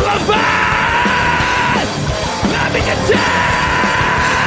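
Live band playing loud, with drum kit and bass guitar, and a singer yelling over the music.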